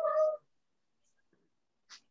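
A brief high-pitched vocal call, under half a second, right at the start, followed by near silence with a faint hiss near the end.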